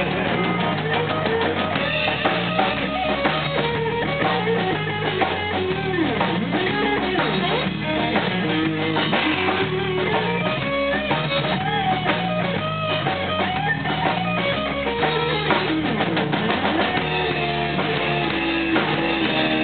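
Live blues-rock band playing an instrumental passage: electric guitars over a drum kit, with a lead guitar line of bending notes.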